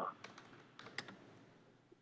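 Faint typing on a computer keyboard: a handful of scattered key clicks in the first second, then quieter.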